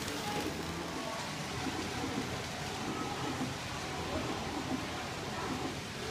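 Model electric trains running on a layout's track, a steady hiss-like rumble, with indistinct chatter of people in the room behind it.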